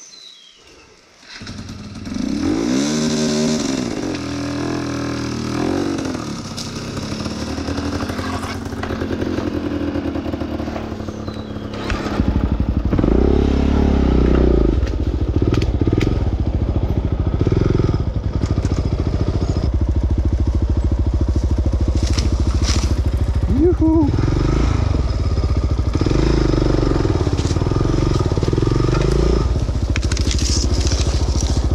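Dirt bike engine comes in suddenly about a second and a half in and revs up and down. From about twelve seconds on it runs louder and steadier.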